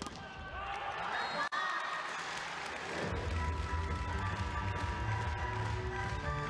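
Busy sports-hall crowd noise as a volleyball point is won. About three seconds in, arena music with a heavy bass beat starts.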